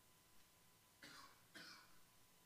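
Near silence in a quiet room, broken by two faint coughs in quick succession about a second in. A faint steady high tone runs underneath.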